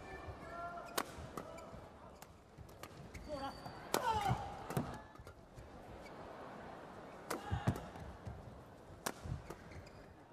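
Badminton rally: a racket striking the shuttlecock in a series of sharp hits, loudest about four seconds in and again past seven seconds.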